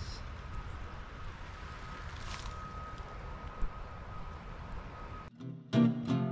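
Quiet outdoor ambience: a low, steady rumble with a faint, thin, steady high whine. Near the end it cuts out and strummed acoustic guitar music starts, much louder.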